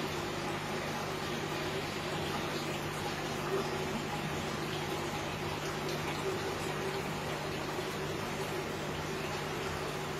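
Aquarium filter and pump running steadily: an even trickle of moving water over a low, constant pump hum.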